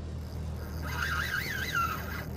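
Steady low hum of the boat's motor ticking over. About a second in, a brief high whine wavers up and down for about a second.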